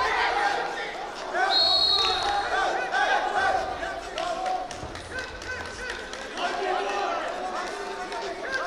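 Voices calling and shouting in a large sports hall, with a brief high whistle-like tone about a second and a half in and occasional thuds.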